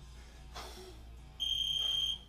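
One long, high electronic beep, a steady tone of just under a second, starting about one and a half seconds in, over background music.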